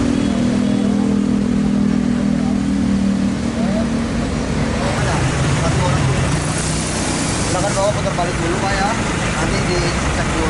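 Car engines idling with a steady low hum, changing to a deeper engine hum about five seconds in, with voices faintly in the background.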